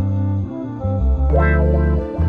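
Background music: loud sustained deep bass notes that change every half second or so, with a brighter flourish coming in a little past halfway.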